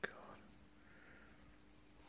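Near silence: faint room tone with a thin steady hum and one brief click at the very start.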